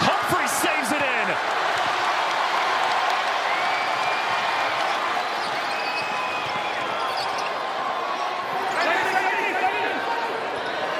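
Crowd noise filling a basketball arena, with a basketball dribbling on the hardwood court. Short sneaker squeaks come in the first second or so and again near the end.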